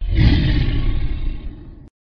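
A cartoon monster roar sound effect. It is loudest in the first half second, tails off, and cuts off abruptly just before two seconds.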